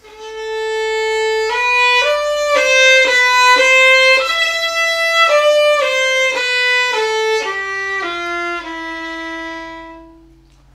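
Solo bowed violin playing a slow phrase: a long opening note, then a string of short notes about half a second each that climb and then fall in pitch, ending on a long low held note. The playing swells louder toward the middle of the phrase and eases off toward the end.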